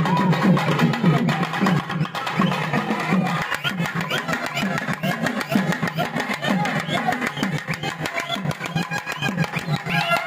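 Live temple procession music: rapid hand-and-stick strokes on a barrel drum under a wavering reed-pipe melody, with the voices of a crowd mixed in.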